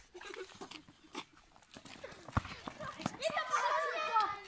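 Children's voices calling out, louder near the end, with a few sharp knocks of a ball being batted between players.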